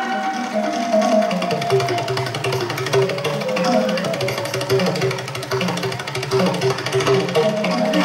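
Thai likay theatre music: an instrumental passage with a pitched melody of repeated struck notes over a busy, even beat of small percussion.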